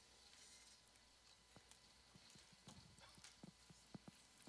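Near silence: room tone with a few faint, scattered knocks and shuffles, coming more often in the second half, as people get to their feet.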